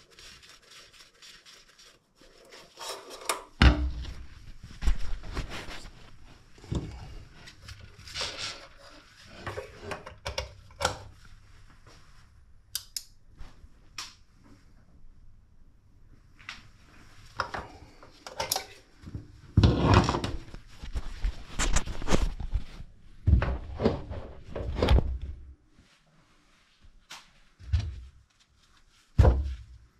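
Irregular handling noise: rubbing, scraping and small knocks, with a few heavy thumps, the loudest about two thirds of the way through.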